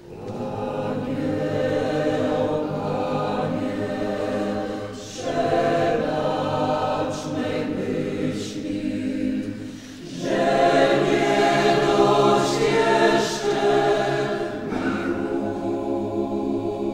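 A group of voices singing a hymn together in a church, in long phrases with short breaks about five and ten seconds in, fuller after the second break.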